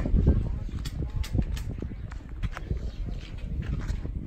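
Open-air walking ambience: a low rumble of wind on the microphone, irregular clicks and footsteps, and faint voices in the background.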